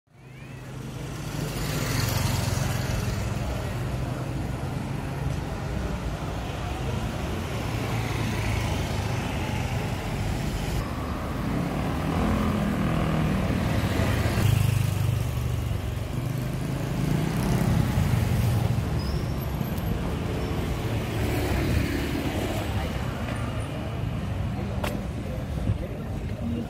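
Street traffic: motorbikes and cars running past at close range, their engine noise swelling and fading several times over a steady low rumble. The sound fades in during the first second.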